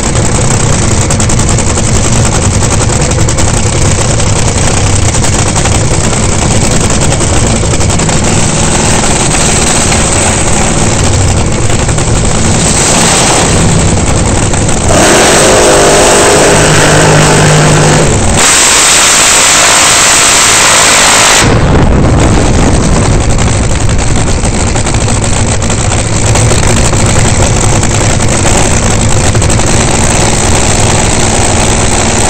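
Top Fuel dragster's supercharged nitromethane V8 running loud and rough at idle. About halfway through it is opened up hard for some six seconds, loud enough to overload the on-board recording, then drops back to a rough idle.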